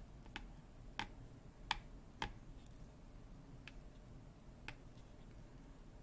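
Small sharp clicks of a diamond painting drill pen picking up special-shaped drills from a plastic tray and pressing them onto the canvas, about six taps at uneven spacing, the loudest about a third of the way in.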